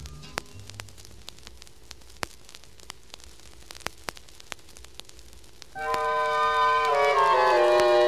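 Record surface noise with scattered clicks and pops in the quiet groove between tracks of a vinyl LP, after a few last low notes fade. About six seconds in, an orchestra enters loudly with sustained chords that step downward in pitch, opening the next song.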